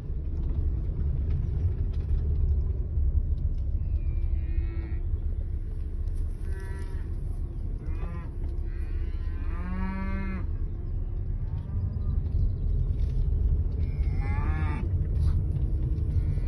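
Cattle mooing about six times, heard from inside a car over the steady low rumble of its engine; the longest call comes about ten seconds in.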